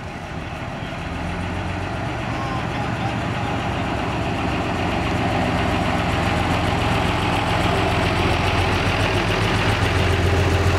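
Vintage single-deck coach's engine running at low speed as the coach pulls slowly towards and past, growing steadily louder throughout.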